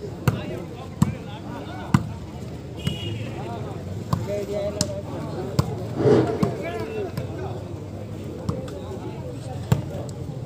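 Volleyball being struck by hand during a rally: sharp smacks of palm on ball, roughly one a second, over the chatter and shouts of spectators, with a louder burst of shouting about six seconds in.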